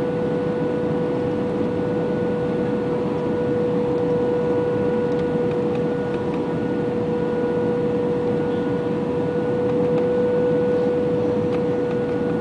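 Steady cabin noise of an Airbus A320 in its descent to land, heard inside the passenger cabin: an even rush of engines and airflow with a constant hum through it.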